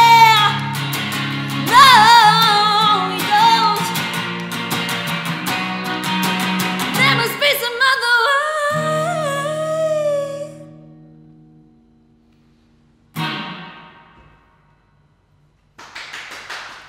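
Closing bars of a song: a woman sings long held notes with vibrato over a strummed hollow-body electric guitar, the last chord ringing out and fading away by about twelve seconds in. About a second later one more brief guitar strum sounds and dies away, leaving near silence.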